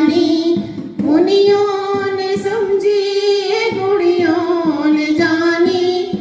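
Two women singing a Saraswati bhajan into microphones, in long held notes of a slow melody with a short break between phrases about a second in.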